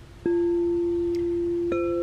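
Two crystal singing bowls struck with a mallet, one after the other: the first strike about a quarter second in sets a lower bowl ringing in a steady pure tone, and a second strike near the end adds a higher bowl's tone over it, both ringing on.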